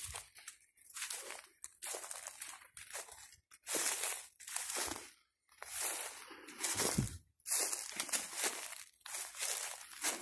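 Footsteps crunching through dry leaf litter and dry grass, about one step a second.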